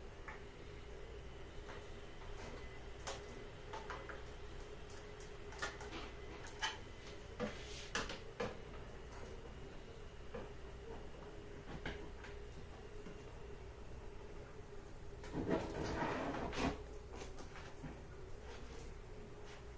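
Light scattered clicks and taps of a 3D-printed plastic hive entrance and corrugated plastic tubing being handled and pushed together. Near the end there is a louder rustling stretch of about a second and a half as the flexible hose is worked.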